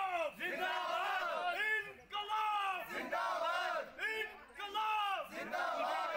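A group of young men shouting slogans in unison, in short repeated phrases.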